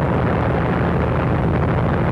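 Steady low drone of airplane engines on an early sound-film track, a rumble with a low hum and nothing sudden in it.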